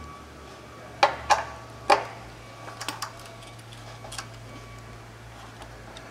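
Metal clicks from hand tools and fittings on a conveyor drive shaft's bearing-unit bolts as they are worked loose: three sharp clicks in the first two seconds, then a few faint ticks. A steady low hum runs underneath.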